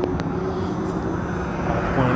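Steady low rumble and hiss of outdoor background noise, with a single faint click a moment in.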